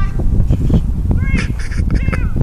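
Wind buffeting the microphone, a strong low rumble throughout, with a few short high-pitched calls that dip in pitch about one and a half seconds in.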